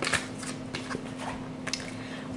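Tarot cards being handled: a few light clicks and rustles of card stock, over a faint steady hum.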